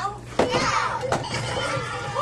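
High-pitched children's voices talking over a steady low hum, with two sharp clicks, about half a second and a second in.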